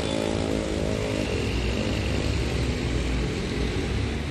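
A small motorcycle engine running close by, its pitch drifting slightly before it fades after about a second, leaving steady street traffic noise.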